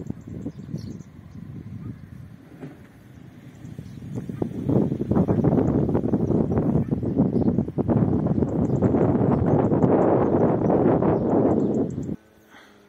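Wind buffeting the microphone, a rushing, unsteady noise that grows much louder about halfway through.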